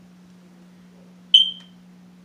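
A single short, high-pitched electronic beep about one and a half seconds in, over a steady faint low hum.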